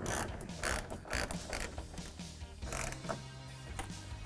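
Hand ratchet with an extension and 10 mm socket clicking as it tightens the mirror's mounting nuts, in several short spells of clicks.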